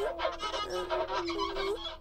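Soft cartoon background score: a held note with a few shorter notes over it, the pitch dipping and coming back up near the end.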